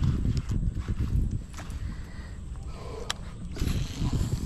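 Wind buffeting an action-camera microphone: an uneven low rumble that eases off in the middle and builds again near the end, with one sharp click about three seconds in.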